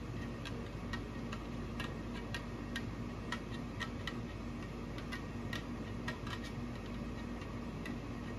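Tennis string ticking against the main strings as a cross string is woven over and under by hand, light clicks coming about twice a second over a steady low hum.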